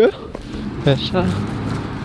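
A man's voice: a couple of short murmured sounds about a second in, between spoken lines.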